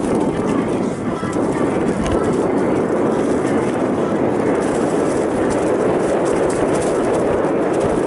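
Loud, steady rush of wind on a bike-mounted camera's microphone as a Giant Trance mountain bike rides along leaf-covered dirt singletrack. Under it come tyre noise and a constant clatter of small knocks as the bike runs over bumps.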